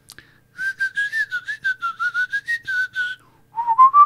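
A man whistling a short, wandering tune. It stops just after three seconds and starts again a little lower about half a second later.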